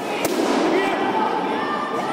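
A single sharp smack about a quarter second in, typical of a taekwondo kick landing on an opponent's padded body protector, over the steady chatter and calls of people in a large sports hall.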